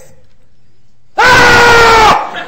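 A single loud scream, held at a steady high pitch for about a second, starting just over a second in and dipping slightly as it ends.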